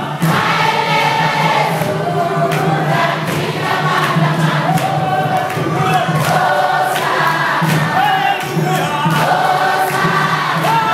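Congregation singing a worship song together, a crowd of voices in unison, with sharp hits keeping a steady beat about once a second.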